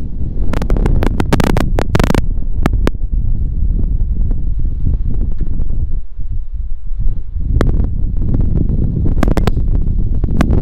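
Strong wind buffeting the microphone, a loud rumble throughout. Clusters of sharp clicks come about a second in and again near the end.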